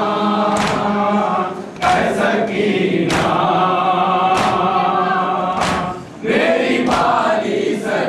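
A chorus of male mourners chants a Urdu noha (Shia lament) in unison, with short pauses between lines. A sharp slap about every second and a quarter keeps time, typical of matam (rhythmic chest-beating).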